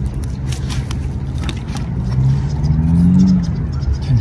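A motor engine running over a steady low rumble, its pitch rising for a second or so about two seconds in, with scattered small clicks.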